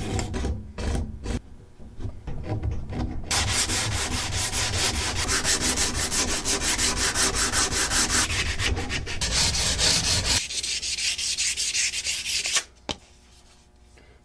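A sanding block rubbed rapidly back and forth along the edge of a guitar neck's fretboard, sanding dried superglue gap-filler flush with the fret ends. It begins after a few seconds of short, irregular scraping strokes and stops about a second before the end.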